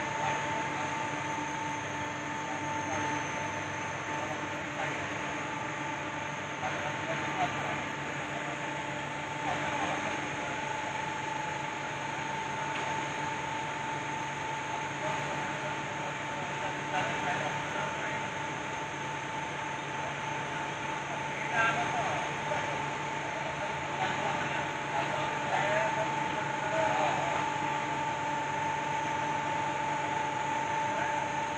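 Electric motor and hydraulic pump of a crane's power pack running with a steady whine, driving the boom and grab.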